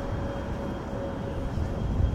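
Outdoor city ambience: a steady low rumble of traffic and street noise, with a faint steady hum.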